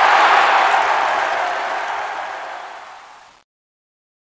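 A crowd-roar sound effect: a rush of noise that comes in loud, fades away steadily over about three seconds and then cuts off.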